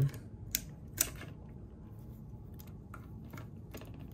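Light clicks and taps of a hard plastic Marvel Legends Wolverine action figure being handled and its arms posed, with two sharper clicks in the first second and fainter ones after, over a steady low hum.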